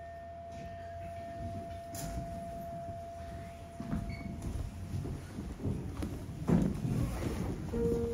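Singing bowl struck once with a mallet, ringing with one steady tone that fades away over about four seconds; the ring is the signal for the children to leave. Then the shuffling, footsteps and knocks of people getting up and walking out.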